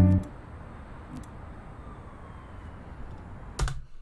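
The song cuts off at the very start, leaving low steady background noise with a few faint clicks. One sharper click comes near the end, from the computer mouse and keyboard as the video is paused.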